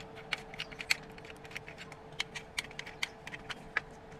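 Irregular light clicks and taps, several a second, from hands handling an aluminium awning arm and its plastic screw knob. A faint steady hum runs underneath.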